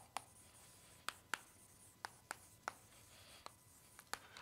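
Chalk writing on a blackboard: a faint series of short, sharp taps, about eight in four seconds, as the chalk strikes and lifts from the board.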